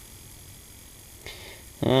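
Steady high-pitched whine of a vintage CRT television's flyback transformer running, with no arcing crackle: its high-voltage connection has been sealed and insulated.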